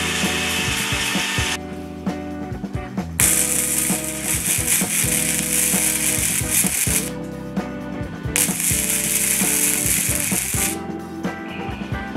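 Gasless flux-core wire welder arc welding steel, a harsh crackling hiss in two long runs of about four and two seconds. Before them comes a short burst from an angle grinder. Background music with a steady beat plays throughout.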